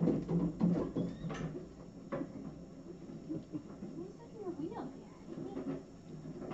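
Indistinct low voices in the first second, then faint short squeaks from a very young kitten being held and fed.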